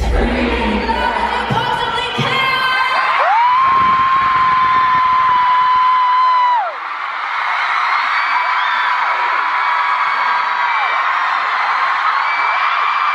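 An amplified pop song ends in a large arena, then the crowd cheers and screams. One long held scream close to the microphone runs for about three seconds and drops off, and a second long scream follows.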